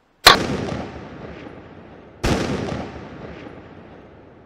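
A rifle shot fired from the tree stand, a sharp loud crack whose echo rolls away through the woods over about a second. A second, quieter bang follows about two seconds later and also fades slowly.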